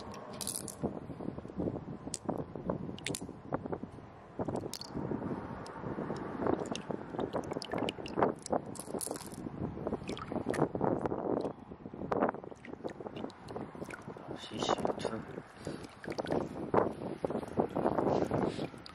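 Shallow seawater sloshing and splashing over sand, with wind on the microphone; many small irregular splashes and clicks throughout.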